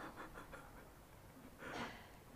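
Faint, breathy laughter: a few quick soft pulses at the start, then a short breath near the end.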